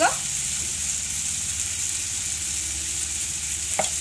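Golden apple slices frying in mustard oil in a non-stick pan: a steady sizzle.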